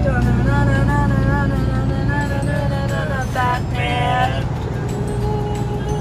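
Steady low rumble of a moving truck's cab, with a voice singing a wavering melody over it that climbs higher about three and a half seconds in.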